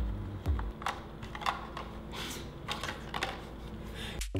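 Scattered sharp plastic and metal clicks and small knocks from a Sony FS5 camcorder body and its parts being handled and fitted together by hand.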